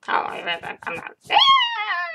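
A woman's voice calling out a playful imitation of a cat's "Meow!": one long, high-pitched call about a second in that rises and then falls. Before it comes a second of choppy voice sound.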